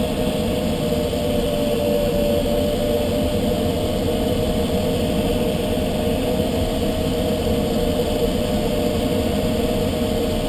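Steady rush of airflow heard inside a glider cockpit in flight, with a steady hum underneath.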